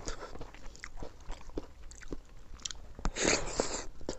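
Close-up eating sounds of a person eating milky rice kheer by hand: soft, wet mouth clicks and chewing, with a louder rush of noise about three seconds in as a handful goes to the mouth.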